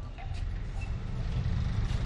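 Steady low background rumble with a faint hiss above it.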